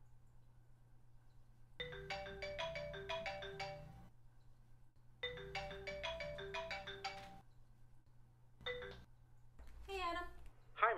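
Mobile phone ringtone, a short melody of quick notes, playing twice and then cut off a moment into a third time as the call is answered.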